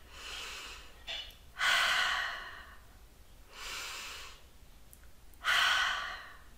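A woman taking slow, deep calming breaths in and out, paced to tracing up and down her fingers: four breaths, softer ones alternating with louder ones, about two seconds apart.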